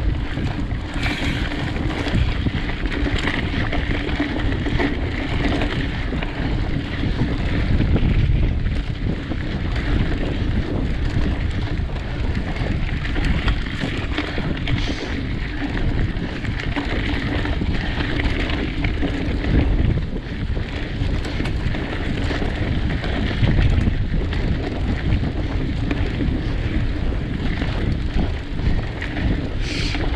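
Wind buffeting the microphone of a handlebar-mounted camera on a mountain bike at speed, over the steady rumble of tyres on a dirt trail and frequent rattles from the bike going over bumps.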